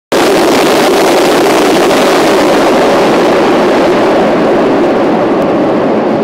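SEPTA Market-Frankford El subway train storming past in the tunnel, a loud, steady rumble and rush of steel wheels on rail whose highest part fades toward the end.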